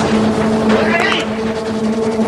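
Film soundtrack: a steady low hum with a short human cry about a second in.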